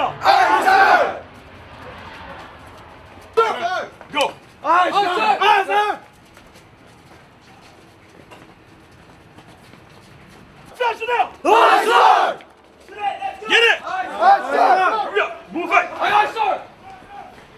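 Shouting voices: a drill instructor barking orders and a group of recruits yelling back together, in several loud bursts with a quieter stretch of a few seconds in the middle.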